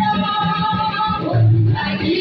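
Choir of women singing with instrumental accompaniment, over a repeating low bass line.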